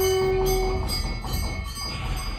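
Temple bells ringing, several steady tones hanging and overlapping, with the lowest tone dying away about a second in.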